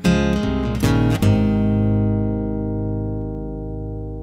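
Acoustic guitar strikes a few closing chords. The last, about a second in, is left to ring and slowly fade as the song ends.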